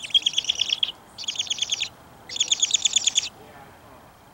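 A bird calling in three quick bursts of rapid, high chattering notes, each burst under a second long.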